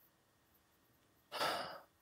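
A single short breath, a sigh or intake of air by a person, about a second and a half in; otherwise near silence.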